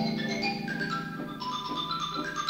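Symphony orchestra playing a Chinese folk dance tune: a xylophone runs in quick notes over harp and strings, with a held low note beneath.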